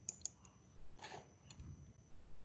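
A few faint clicks at a computer: a cluster near the start and another about a second and a half in, with a short soft noise about a second in.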